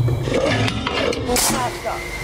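Compressed-air apple cannon firing: a short, sharp burst of air about one and a half seconds in, with people's voices around it.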